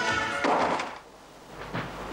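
Dance music that stops abruptly about half a second in with a door thudding shut, followed by quiet with a few faint clicks.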